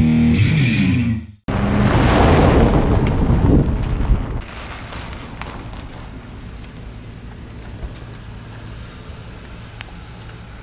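Distorted rock music that cuts off about a second and a half in. A loud rushing noise follows for about three seconds, then a quieter steady sound of a Ford Crown Victoria Police Interceptor rolling up slowly and stopping.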